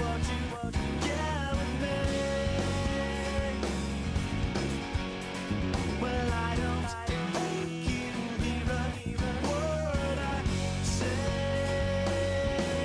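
Rock song in an instrumental stretch with no lyrics: guitar notes held and bent over a steady bass and a regular drum beat.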